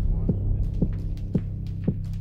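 Background music: a low sustained drone with a soft beat pulsing about twice a second.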